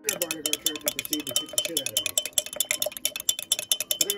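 Metal spoon stirring a thick sauce in a glass mason jar, clinking rapidly and continuously against the glass.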